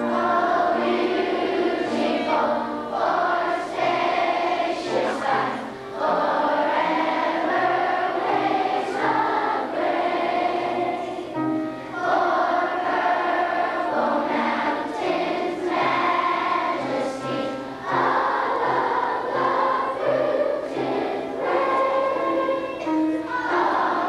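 A large group of schoolchildren singing together in unison over a low instrumental accompaniment, in phrases with short breaks about every six seconds.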